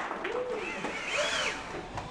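Small electric motors on a student-built wheeled robot whining, the pitch rising and falling twice as they speed up and slow down.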